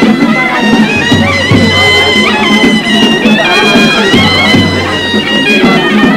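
Music led by a reed wind instrument playing a stepping melody over a low, steady drone, with a few low beats.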